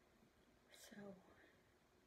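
Near silence: room tone, with one softly spoken word about a second in.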